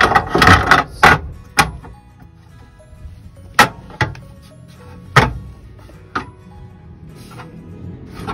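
Clattering and then a series of sharp separate knocks as a steel swivel seat plate is shoved and worked into place on the van's seat base, over background music.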